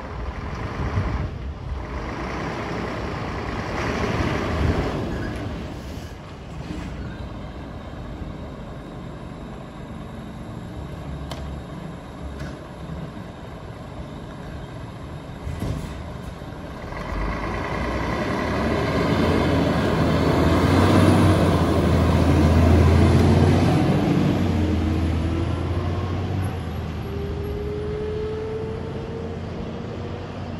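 Scania fire truck's diesel engine pulling out and accelerating away, its sound building to the loudest point about two-thirds of the way through, then a slowly rising whine as it speeds off down the road, without its siren. Passing cars go by earlier on.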